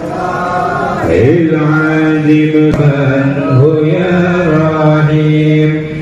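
A man's voice chanting Arabic dhikr through a hand microphone and loudspeaker, drawing out long held notes. A new phrase begins about a second in with a sliding, ornamented rise in pitch.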